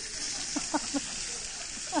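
Beef steaks sizzling as they sear in a hot pan over a gas burner, a steady frying hiss.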